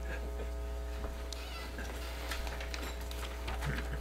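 Room noise of people sitting down: faint shuffles, small knocks and chair creaks over a steady electrical hum.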